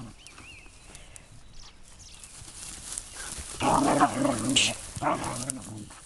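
A Scottish Deerhound puppy and a whippet growling and barking in play as they wrestle in long grass. There is a loud bout about a second long starting three and a half seconds in, and a shorter one about five seconds in.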